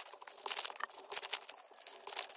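Foil wrapper of a Topps Garbage Pail Kids Chrome trading card pack crinkling in the hands as the pack is opened: a dense run of short crackles.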